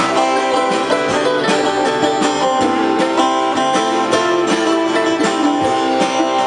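A band playing an instrumental passage, with plucked guitar lines over a steady drum beat.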